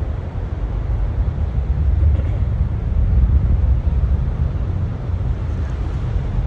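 Steady low rumble of a distant SpaceX rocket launch, swelling slightly over a few seconds.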